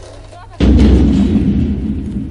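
Cinematic boom effect on the soundtrack: one sudden deep hit about half a second in, dying away over a second and a half.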